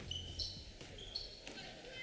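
A basketball being dribbled on a hardwood gym floor, faint, with a few short high squeaks.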